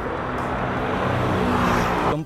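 Road and wind noise of a moving car, a steady rushing hiss that grows slightly louder toward the end.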